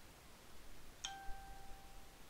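A faint click about a second in, followed by a single steady beep at one pitch that lasts about a second.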